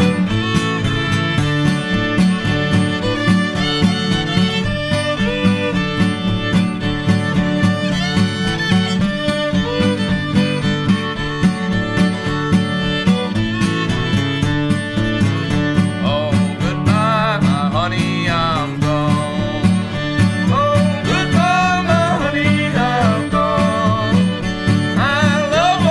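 A live string band playing a song: a fiddle carrying the melody over plucked-string accompaniment, in a steady rhythm.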